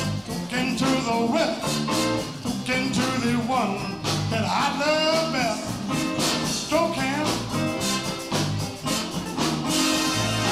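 Live band playing a song: a melody line over a steady drum beat.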